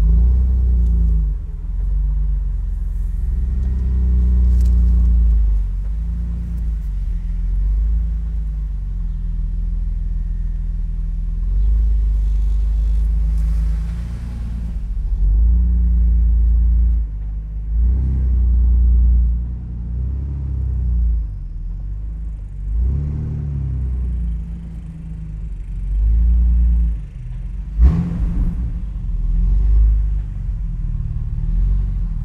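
Jeep Wrangler TJ engine and exhaust as it drives, a low rumble that rises and falls with the throttle several times. There is a single sharp knock near the end.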